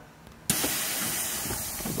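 Air suspension on a Volkswagen Saveiro pickup dumping air from all four bags at once: a sudden steady hiss of escaping air starts about half a second in and eases off slightly as the truck lowers fully.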